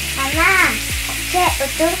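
Food sizzling steadily in a frying pan on a gas stove.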